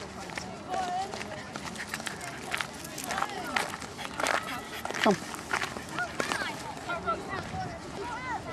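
Chatter and calls from people nearby, with no clear words, mixed with scattered clicks and knocks. One high call falls sharply in pitch about five seconds in.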